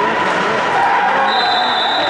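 Skate blades scraping and carving on the ice of a bandy rink, with distant shouts from players. A high steady tone comes in past the middle.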